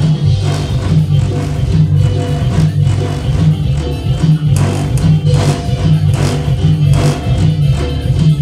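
Loud dance music over PA loudspeakers, with a heavy bass line and a steady percussion beat.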